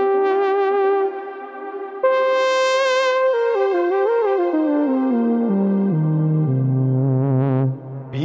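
Expressive E Osmose synthesizer playing a single-line lead through a Universal Audio Delverb pedal, which adds delay and reverb. A held note gives way to a higher one about two seconds in, bends briefly, then steps down in pitch to a long low note near the end.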